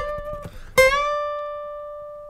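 Steel-string acoustic guitar note bent up a whole step on the B string, from the 13th-fret pitch to the 15th. The first bend rings briefly; a little under a second in the note is picked again and bent up quickly, then held and slowly fading.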